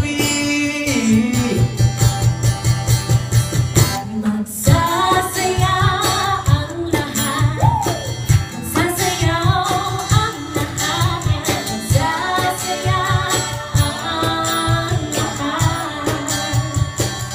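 Singers performing a pop song into handheld microphones over a backing track with a steady beat. A young man's voice leads first; after a short break about four seconds in, female voices take over.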